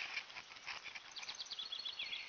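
A small bird calling: a quick run of short, high repeated chirps starting about a second in, ending in a falling note near the end.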